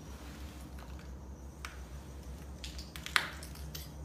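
Scattered faint clicks and scuffs over a low steady rumble, with one sharp click a little after three seconds in.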